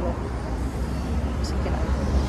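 Street traffic of cars and motorbikes going by, under a steady low rumble of wind buffeting the microphone.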